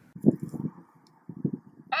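Irregular low rumbling and buffeting from wind hitting the microphone outdoors, in gusts starting just after the cut and again about a second and a half in.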